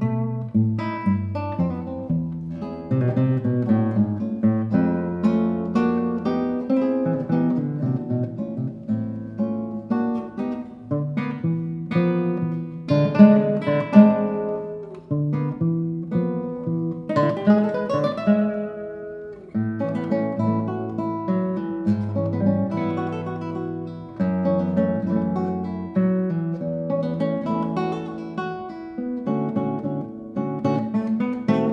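Two nylon-string classical guitars playing a tango as a duet, with plucked melody and chords over a rhythmic bass line and accented attacks.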